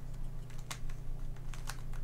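Plastic Redi Cube corners being twisted by hand in a quick sequence of turns (a 'пиф-паф' move), giving a string of sharp clicks. Two clicks are louder, about 0.7 s and 1.7 s in.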